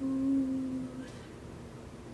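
A woman's voice holding one long, steady "oo" vowel, the drawn-out end of "two" as she counts aloud, for about a second; then quiet room tone.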